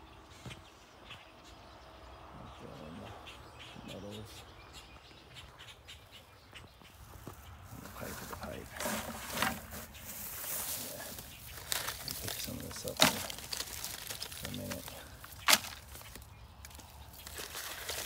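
Grass, weeds and plastic litter rustling and crackling as litter is picked out of the undergrowth by hand, with two sharp snaps in the second half. The first half is quieter.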